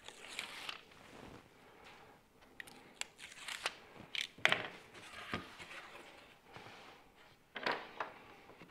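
Snap-off utility knife trimming double-sided tape along the edge of a wooden board: soft slicing and crinkling of the tape with scattered small clicks and taps, the loudest about four and a half seconds in. A short scuff near the end.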